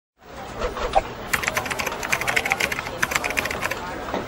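Computer keyboard typing sound effect: a quick run of key clicks that starts a little over a second in and stops shortly before the end.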